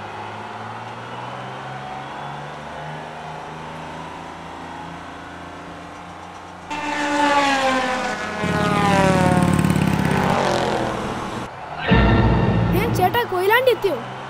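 Cartoon sound effect of a bus engine running with a steady low drone. About seven seconds in it becomes much louder for several seconds as the bus belches exhaust smoke, and a deep rumble follows near the end.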